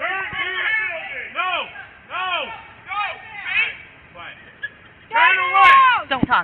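Voices shouting short phrases again and again, each one rising then falling in pitch, the longest and loudest shout near the end, with a sharp click just before that shout ends.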